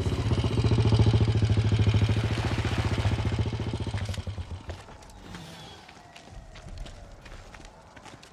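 Motorcycle engine running with a fast, even putter, loudest about a second in, then dying away about four seconds in as the bike comes to a stop.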